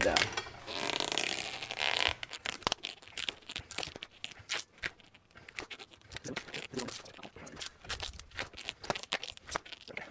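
Gorilla Tape being pulled off the roll under tension, a continuous ripping sound for about two seconds. This is followed by a long run of small crackles and clicks as the tape is laid and pressed into the rim bed of a motorcycle wheel.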